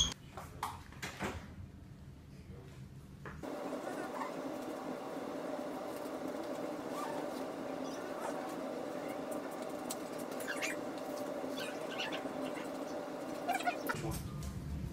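Electric cast saw switched on about three and a half seconds in, then running steadily as it cuts off a forearm cast.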